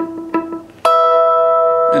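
Fender Telecaster electric guitar, clean tone: the E root note on the D string is picked twice, down and up. Then, nearly a second in, the first chord (E) is pulled with the fingers, hybrid-picked, and rings on steadily.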